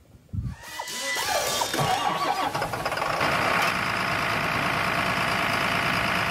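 An engine being cranked and starting: a thump, then a building, wavering run-up that settles into steady running about three seconds in.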